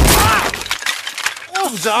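A wooden chair smashed over a man's back: a sudden loud crash of breaking wood right at the start that dies away within about half a second, with a man's yell as it lands. A man's voice comes in near the end.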